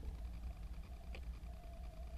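Faint handling noise as multimeter probe leads and wiring are moved: a low steady rumble with one small click a little over a second in.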